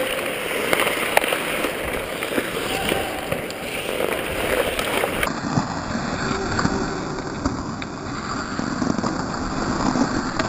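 Ice hockey skates carving and scraping on the ice in a steady rush, close to the camera, with a few sharp clacks of sticks on the puck.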